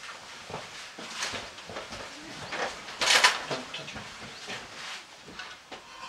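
Knocks and scrapes of people moving about in a bird hide, with one louder scraping noise lasting about half a second, about three seconds in.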